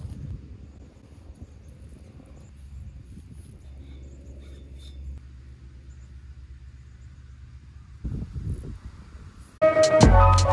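Low steady outdoor rumble with a few faint scattered clicks, and a louder rumbling burst about eight seconds in. Music with a beat starts just before the end.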